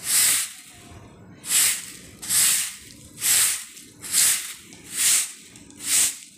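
A broom sweeping a paved yard in steady strokes, one swish about every second, seven in all.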